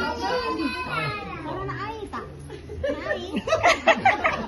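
Several people talking over one another in a room, children's voices among them, getting louder near the end.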